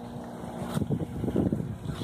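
Wind buffeting the microphone in irregular gusts, getting louder about a second in, over a faint steady hum.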